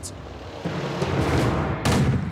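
A noisy rumble that grows louder about two-thirds of a second in, then a sharp boom near the end: a PzH 2000 155 mm self-propelled howitzer firing.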